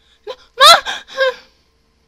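A woman's sudden loud, high-pitched gasping cry into a close microphone: three short bursts within about a second, the middle one the loudest and rising in pitch.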